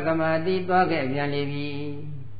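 A Buddhist monk's voice chanting in a level, sustained monotone, with brief steps in pitch between phrases.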